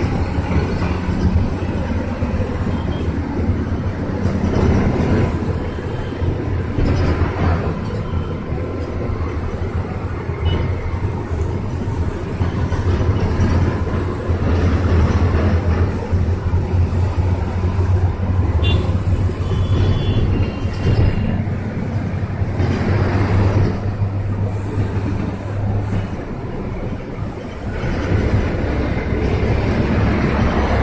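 Inside a moving city bus: a steady low engine drone mixed with road and window noise, with occasional swells as traffic passes. The low drone drops away about 26 seconds in as the engine note eases, then builds again.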